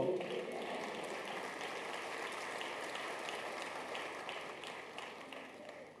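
Congregation applauding, fading away over the last second or two.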